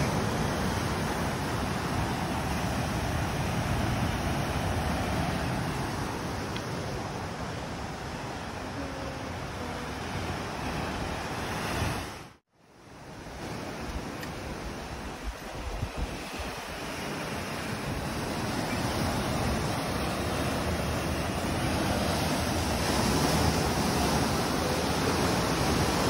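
Ocean surf breaking against rocky cliffs below, a steady rushing of waves; the sound briefly drops out about halfway through.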